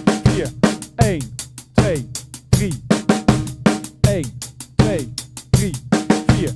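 Acoustic drum kit playing a slow practice groove: even sixteenth notes on the hi-hat, struck hand to hand, with bass drum and snare strokes. A strong accent lands about every three-quarters of a second.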